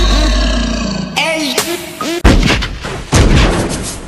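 Several loud gunshots with ringing tails, starting about a second in as the dance music cuts out.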